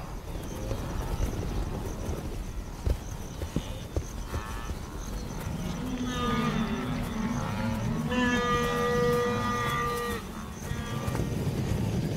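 Wildebeest herd calling with grunts and lowing from about halfway in, including one long drawn-out call lasting about two seconds, over a low rumbling background.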